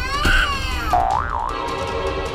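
Cartoon sound effects over background music: a short pitched sound rising and falling at the start, then a springy, wobbling boing-like tone about a second in.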